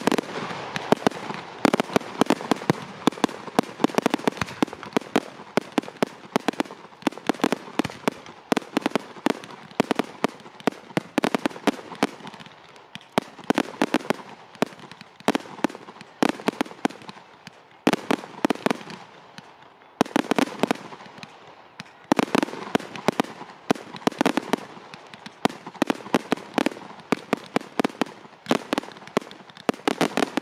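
Fireworks display: a dense, rapid barrage of bangs and crackles from bursting aerial shells, easing briefly about two-thirds of the way through before picking up again.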